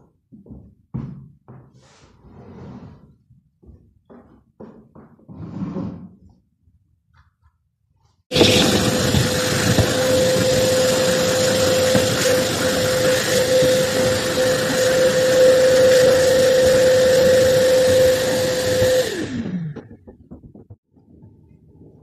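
Scattered handling knocks and rustles, then a vacuum cleaner switched on about eight seconds in, running loud and steady with a constant whine for about eleven seconds. It is then switched off, the whine falling in pitch as the motor winds down.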